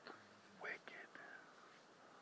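A person's voice, quiet and brief, almost a whisper: a short call a little over half a second in and a softer falling one about a second later, over near silence.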